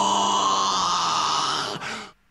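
A man's voice holding one long, steady "ahh" of amazement on a single pitch, which cuts off suddenly near the end.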